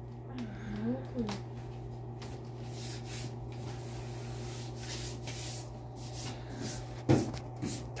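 A hand rubbing and tapping on a car's sheet-metal hood, light scattered taps over a steady low hum. A short vocal sound comes about seven seconds in.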